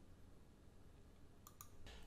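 Near silence: faint room tone with a couple of soft clicks, one about one and a half seconds in.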